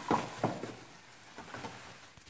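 Plastic hand-operated food choppers handled and set down on a tabletop: two soft knocks in the first half second, then faint handling noise that fades.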